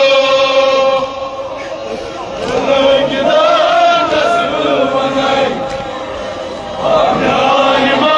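Men's voices chanting a Kashmiri noha, a Shia mourning lament, in long held lines, loud throughout with two dips in volume: one about a second in and one in the second half.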